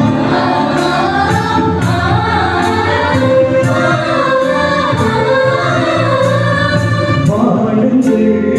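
Church choir singing a Tamil Catholic hymn to electronic keyboard accompaniment, with a steady beat of regular ticks about every second.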